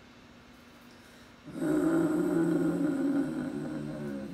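A person's voice making one long, steady, sulky groan, starting about a second and a half in and slowly fading near the end.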